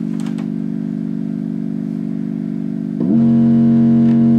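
Soloed sub-bass synth from the Maybach Kings refill in Reason, loud: one long held note, then a new, louder note starts about three seconds in.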